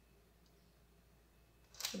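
Near silence: faint room tone, with a woman's voice starting to speak near the end.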